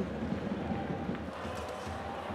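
Ice hockey arena sound during live play: steady crowd noise with skates and sticks on the ice.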